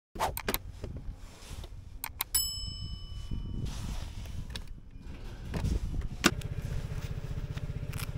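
A few clicks, then a single bell-like ding that rings for just over a second. About six seconds in, a Vespa GTS 300's single-cylinder engine begins idling with a steady low pulse.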